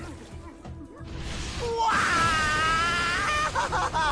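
A voice actor's loud, high-pitched wailing cry for a cartoon boar creature, starting about two seconds in, held for about a second and a half, then breaking into shorter sobs.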